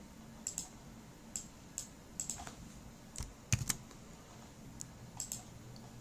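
Computer keyboard keystrokes: about a dozen short, sharp key clicks at an uneven pace, with a louder knock about three and a half seconds in.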